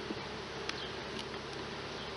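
Honeybees buzzing steadily around an open hive, the colony stirred up by the frames being handled. A light click about two-thirds of the way through.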